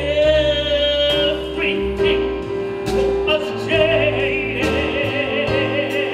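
A woman singing with a strong vibrato, holding one long note near the start and another through the second half, backed by an orchestra with a steady bass line.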